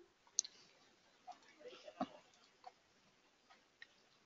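A few faint, scattered computer mouse and keyboard clicks over quiet room tone.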